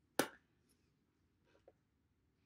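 A single short lip pop, a quarter of a second in, as lips pressed together over wet liquid lipstick are parted, then near quiet.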